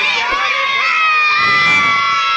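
Boys shouting together inside a crowded minibus in one long held cheer, several voices holding steady pitches that sag slightly downward.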